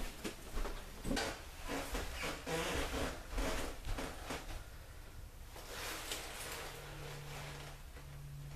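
Short rustling and scuffing noises come one after another for the first four seconds or so, the sound of a person moving about and handling his jacket. Then it goes quieter, and a low steady hum comes in near the end.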